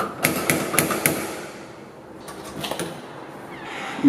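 Metal door knocker rapped against a door about five times in quick succession, followed in the middle by a few fainter clicks.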